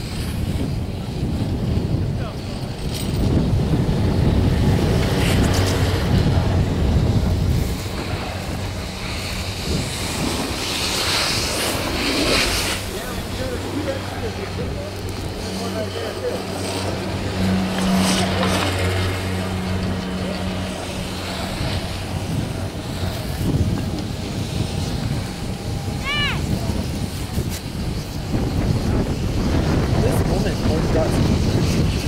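Wind rumbling on the microphone during a chairlift ride. A steady low hum comes in about eight seconds in and fades out around twenty-two seconds. A brief chirp sounds near the end.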